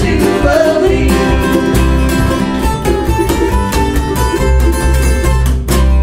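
Live acoustic country-folk band playing: strummed and picked string instruments with a steady beat, and singing over them.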